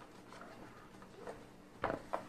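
Cardboard board-game box being handled and turned over on a table: faint rustling, then one short knock near the end.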